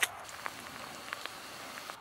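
A crisp bite into a raw apple, a single sharp crunch, followed by a steady hiss with a few small scattered clicks.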